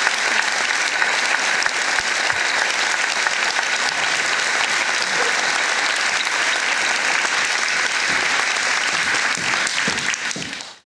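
Audience applause, a dense, steady clapping sustained without a break.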